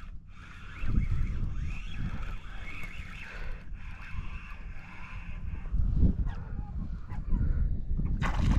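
Spinning reel being cranked in a steady whir while a hooked redfish is brought toward the kayak, over wind rumble on the microphone. The whir stops about six seconds in.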